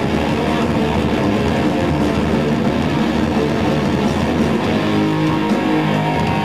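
Live metalcore band playing loud, dense electric guitar riffs over bass; in the last second or so the guitars hold longer sustained notes.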